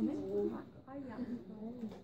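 Quiet, indistinct talking in the background, with no clear words.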